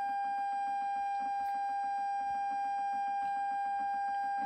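A steady electronic beep tone, held unbroken at one pitch, laid over the audio to mask copyrighted music from the car stereo.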